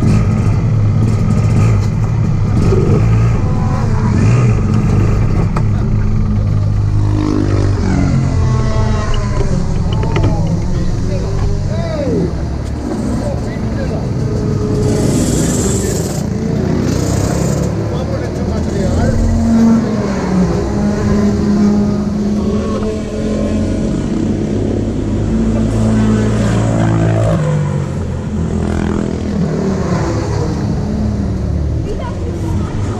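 An engine running steadily, with people's voices over it.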